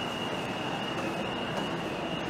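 Luggage trolley wheels giving a steady, high-pitched squeal as the trolley is pushed, over the constant hubbub of a busy terminal hall.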